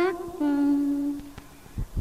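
A woman's voice chanting Hòa Hảo scripture verse in a sung style, holding one long steady hummed note at the end of a line, then fading. A soft low thump comes just before the next line begins.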